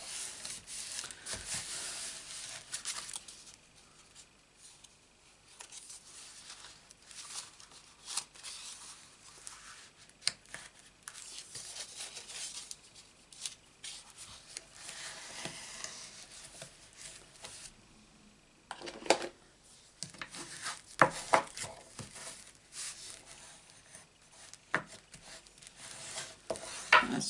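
Hands sliding, rubbing and pressing layers of cardstock and patterned paper on a craft mat as a layer is nudged straight: paper rustling, loudest in the first few seconds, then several sharp taps and clicks in the last third.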